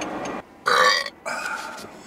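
Steady car engine and road noise cuts off, then a man burps loudly, followed by a second, quieter burp.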